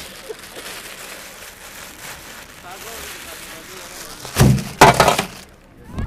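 Two loud, short crackling rustles close to the microphone, about four and a half and five seconds in, over a faint steady outdoor hiss.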